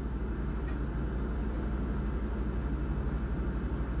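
Steady low background hum with a fast, even flutter, and one faint tick a little under a second in.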